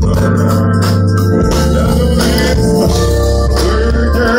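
Live go-go band playing loud, with long, steady bass notes under keyboard chords.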